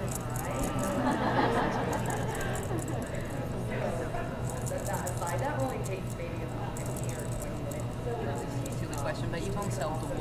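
Steel wool rubbing in small circles over a UTEE-glazed brass pendant to dull the glaze to a matte finish, heard as faint, intermittent scratching. Background voices and a steady low hum run underneath and are the louder part.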